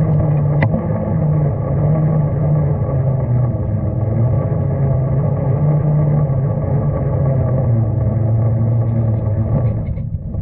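Electric motor and geared drivetrain of an RC scale crawler whining steadily as it drives over snow, the pitch sinking slightly in the second half as it slows. One sharp click about half a second in.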